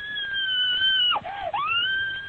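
A person screaming over a phone line: a long, high, held shriek that breaks off and dips in pitch about a second in, then a second held shriek, during a carjacking.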